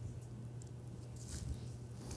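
Faint rustling and handling sounds at a lectern, the clearest a soft brush of noise a little past halfway, over a steady low hum.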